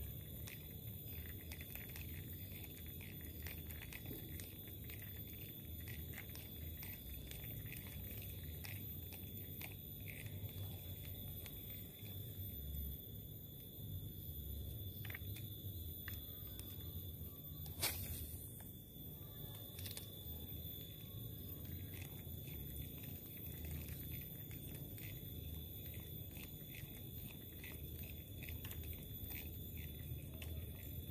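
Creekside ambience: a steady high-pitched whine over a low rumble, with scattered small clicks and one sharp click about eighteen seconds in.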